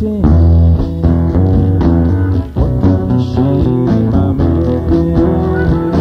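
Rock band playing an instrumental passage with no singing: guitars and bass guitar over a steady drum beat.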